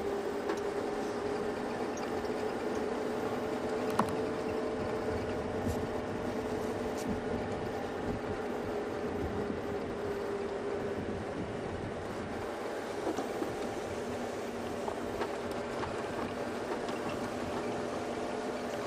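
Open safari vehicle driving along a dirt road: its engine drones steadily with road noise underneath, and a single sharp knock comes about four seconds in.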